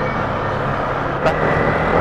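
Yamaha Sniper 155 VVA motorcycle's single-cylinder engine running steadily at low road speed, mixed with wind rush on the microphone, getting a little louder in the second half.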